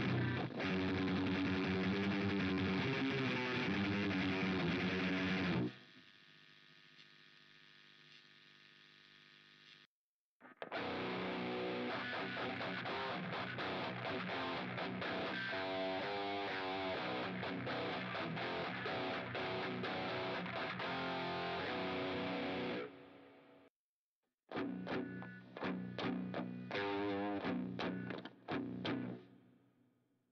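Electric guitar played through high-gain distorted metal amp presets in Positive Grid's Bias FX 2 amp-simulator app. A distorted riff runs for about six seconds and then a chord is left ringing quietly until about ten seconds in. After a brief break a longer riff runs on, followed by another pause and short, stop-start chugged chords near the end.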